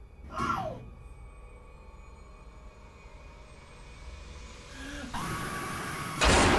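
Horror-trailer sound design: a short falling whoosh just after the start, over a low drone, then a noisy swell building near the end.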